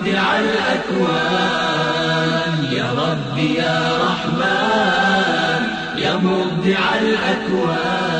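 Arabic devotional nasheed: voices singing a slow melody with long, wavering held notes.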